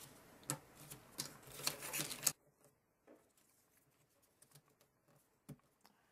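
Cardboard jigsaw puzzle pieces clicking and tapping against each other and the paper-covered tabletop as they are handled and fitted together, stopping abruptly about two seconds in; one more faint click near the end.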